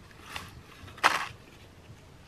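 Gloved hands handling a plastic box of skateboard bearings: a soft scrape about a third of a second in, then a louder, brief rustling scrape about a second in.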